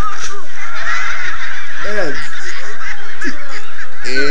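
Animated movie trailer soundtrack playing on a computer: a loud clamour of many children's voices shouting together, with one voice sliding down in pitch about two seconds in.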